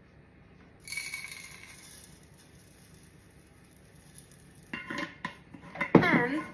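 Dry rolled oats poured into a plastic blender cup on a kitchen scale, a hiss that starts about a second in and fades away over about two seconds. A few sharp knocks follow near the end, the last one the loudest.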